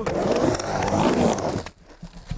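Skateboard wheels rolling on a ramp, a steady rumble that cuts out suddenly near the end.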